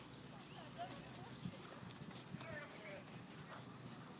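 A horse's hoofbeats on turf as it moves across a grass field, faint and irregular, with indistinct voices in the background.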